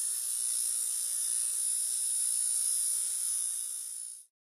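Steady electronic hiss, high and bright, with a faint low hum under it: a synthesized logo-reveal sound effect. It holds steady and dips slightly near the end.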